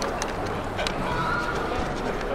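Outdoor background murmur with scattered sharp clicks and a brief high, steady tone about a second in.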